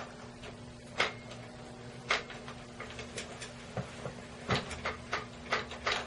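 Irregular sharp clicks and knocks of hand work on a motorcycle's handlebar-mounted front brake lever and its clamp, about nine in all, the loudest about one, two and four and a half seconds in. A steady low hum runs underneath.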